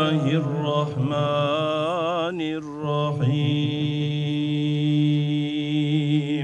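A hodja chanting an Islamic prayer (dua): a single man's voice in long held notes, with wavering melodic turns between them and a short pause for breath about halfway.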